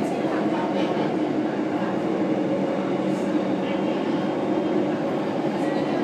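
A steady, loud rumbling noise that holds at an even level, with indistinct voices mixed in.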